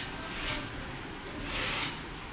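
Nylon fabric of an inflatable panda costume rustling as it is handled, in two brief swells, over a steady hiss.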